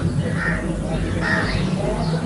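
A bird calling twice, about a second apart, over a steady low hum.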